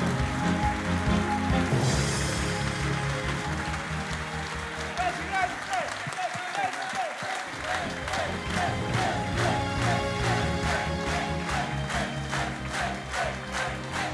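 An audience applauding and cheering over music with a steady beat. In the second half the applause settles into rhythmic clapping.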